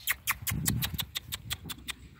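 A quick, even run of short sharp clicks, about eight a second, with a low rumble around the middle.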